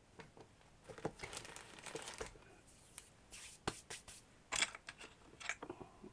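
Light rustling, taps and small clicks of craft tools and small clay pieces being handled and moved about on a cutting mat, with a few sharper clicks in the second half.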